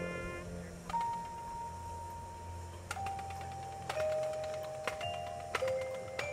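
Drum corps front ensemble playing a slow descending line of single bell-like notes: four notes, each lower than the last and each held on as the next enters.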